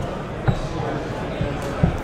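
Two dull thuds on a tabletop, one about half a second in and a louder one near the end, as trading cards and a card box are handled on the table, over a steady murmur of background voices.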